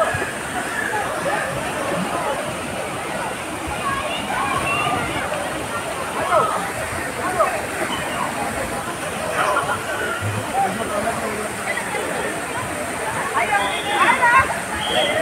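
Steady rush of splashing, falling water from a water-park play structure, with a crowd's scattered shouts and chatter over it.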